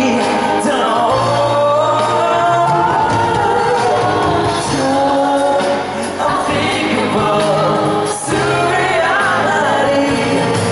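Live pop music: a male singer singing into a microphone over his band, with a steady bass line and what may be backing voices.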